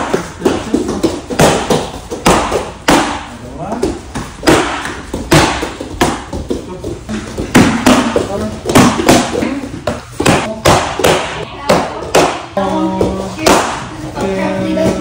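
Bare-foot taekwondo kicks smacking leather kicking paddles: a quick, uneven series of sharp slaps, about one or two a second. Children's voices sound between the kicks.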